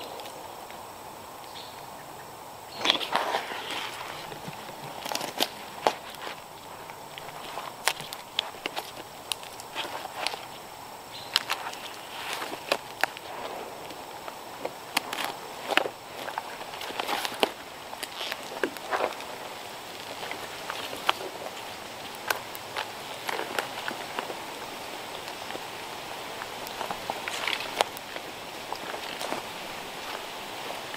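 Tree-climbing gear in use: irregular knocks, clinks and scrapes as a climbing stick, rope and boots work against the tree trunk, with a louder flurry of knocking and rustling about three seconds in.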